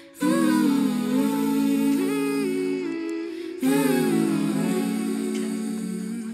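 Music of layered humming vocals carrying a slow, gliding melody in two phrases, the second beginning about three and a half seconds in.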